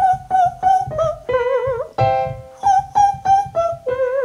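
A man's voice sings in the flageolet register, the light, very high register above head voice. Twice he sings a five-note pattern: three short repeated notes, one a step lower, then a held note a fifth below the first, with a slight wobble. A piano chord sounds between the two runs.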